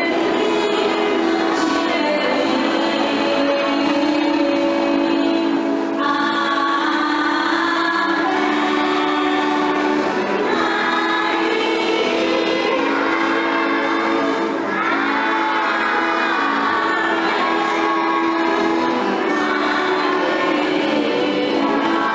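Religious hymn sung by a group of voices, over an accompaniment of steady held notes, going on without a break.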